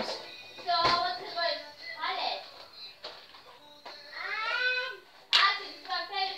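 A song with a singing voice playing, with two sharp clicks, one about a second in and one near the end.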